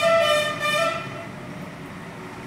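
A vehicle horn sounding one long held blast, its pitch shifting slightly in steps, that stops about a second in.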